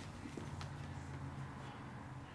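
Quiet shoelace handling on a sneaker: a couple of faint soft ticks and rustles over a low steady room hum.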